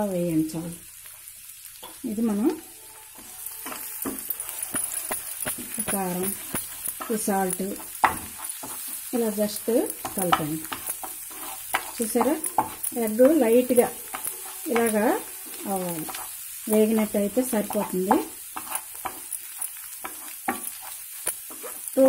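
Egg and diced potatoes frying in a pan: steady sizzling that grows louder a few seconds in. A spatula scrapes and stirs the egg in repeated short strokes about once a second.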